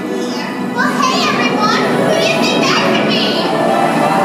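Many children in a theatre audience calling out in high voices at once, over music; the voices get louder about a second in.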